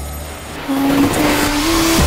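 Film-trailer sound design: about two-thirds of a second in, a rush of noise swells up under a steady tone that steps up in pitch three times, building toward a title card.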